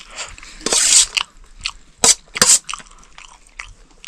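A steel spoon scraping and clinking on a stainless steel plate of rice, with chewing. The loudest part is a scrape about a second in, followed by two sharp clinks about half a second apart near the middle.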